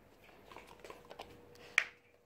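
Akita dog mouthing and chewing a small treat: a run of small wet clicks and smacks, then one sharp, much louder snap shortly before the end.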